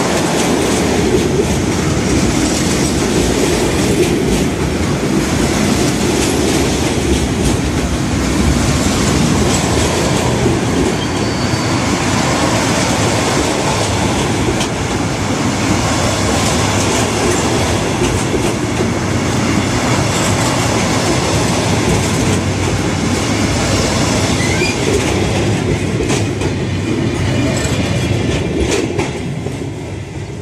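A train passing close by on the rails: steady loud wheel and running noise with many repeated knocks, dying away near the end.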